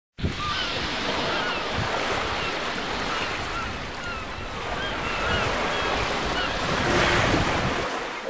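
Waves washing on a shore with wind noise; it starts abruptly and swells near the end. Scattered short, high chirping calls sound over the surf.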